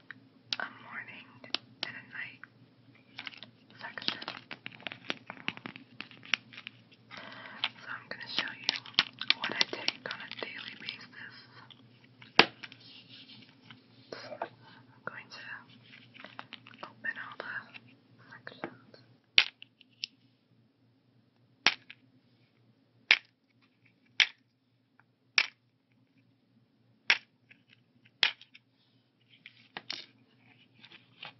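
Plastic seven-day pill organizer being handled and tapped under soft whispering, then seven separate sharp clicks about a second apart as its snap lids are flipped open one at a time.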